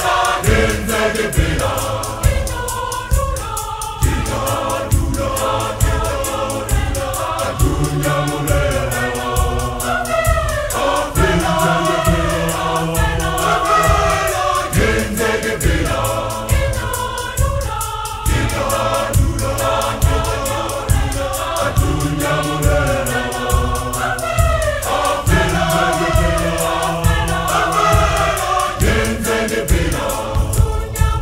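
A large choir singing a gospel hymn in several-part harmony, over a steady low beat that runs throughout.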